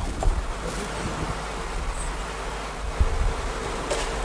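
Steady low hum with an even hiss of background noise, and a single soft knock about three seconds in.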